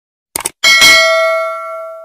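Subscribe-animation sound effects: a quick double mouse click, then a notification-bell ding that rings and fades away over about a second and a half.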